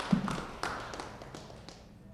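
Scattered clapping from a small group, thinning out and fading away. A dull low thump comes just after the start.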